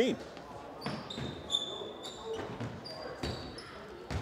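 A basketball bouncing on a hardwood gym floor, with several short high squeaks of sneakers, heard faintly in a large gym.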